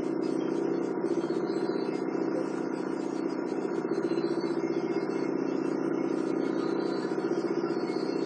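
A steady machine hum with several held, even tones, running unchanged without a break.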